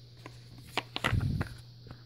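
Plastic parts of a Dyson DC25 vacuum's cyclone assembly handled close to the microphone: a few light clicks and knocks about three-quarters of a second in, then a brief rubbing rustle, over a steady low hum.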